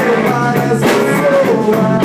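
A rock trio playing live: electric guitar, electric bass and drum kit together, with cymbal hits over steady guitar chords and bent notes.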